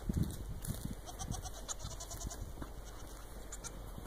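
A goat bleating: a short, wavering bleat about a second in and a fainter one a moment later, with low rumbling thumps near the start.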